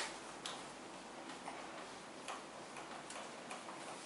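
Marker pen writing on a whiteboard: a string of short, faint ticks and taps as the strokes are made, with one sharper click at the very start.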